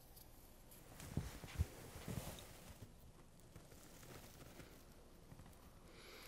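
Faint handling sounds: a few soft low bumps and light rustling between about one and two and a half seconds in, as a hand presses a socked foot down onto a plastic foot-impression ink mat; otherwise quiet room tone.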